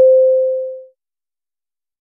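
A single electronic beep: one pure, steady tone that starts with a click and fades away in under a second.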